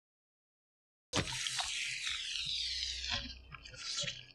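Liquid squirting sound effect for a syringe injecting: a sudden hiss about a second in, with falling sweeps running through it, that fades after about two seconds, followed by a shorter burst near the end.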